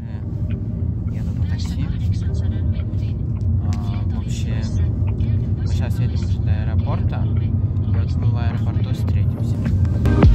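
Car cabin road noise: a steady low rumble of a car driving along, heard from inside, with faint voices at times.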